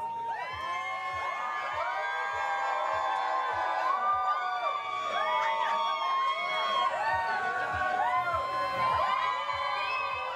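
A crowd cheering and whooping, many voices overlapping, over background music with a steady low beat.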